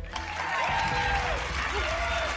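Audience applause that starts suddenly and goes on steadily, with a voice or two calling out above it and faint music underneath.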